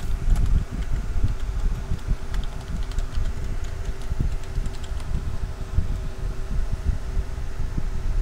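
A steady low rumble with a thin hum, and faint computer-keyboard key clicks as a terminal command and a password are typed.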